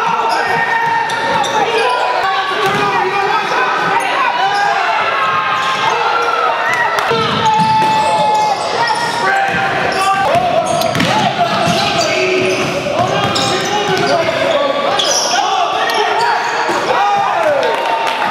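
Basketball being dribbled and bounced on a hardwood gym floor during play, with players and spectators calling out, in a large echoing hall.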